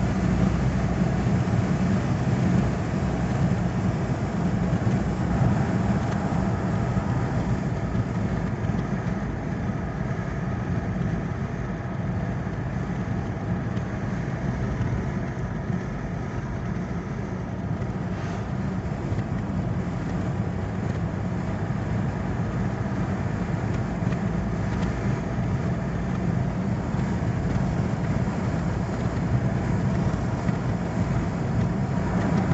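Steady road and engine noise inside the cabin of a car cruising on a highway.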